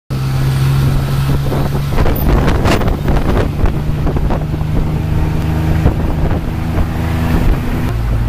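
Tuk-tuk engine running under way, a steady low drone that shifts pitch slightly as the driver works the throttle, with wind buffeting the microphone.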